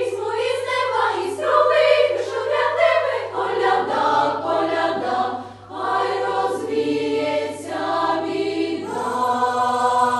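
Children's choir singing a Ukrainian carol, phrase after phrase, with a short breath break about halfway through.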